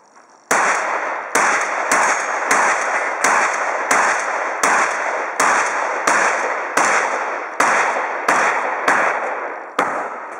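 Pump-action shotgun fired in a rapid string of about fourteen shots, roughly one every 0.7 seconds, the first about half a second in. Each shot trails off in a short echo before the next.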